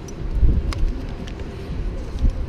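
Wind buffeting the microphone, an uneven low rumble, with a sharp click about two-thirds of a second in.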